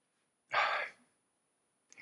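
A man lets out a single short, breathy sigh about half a second in, with near silence around it.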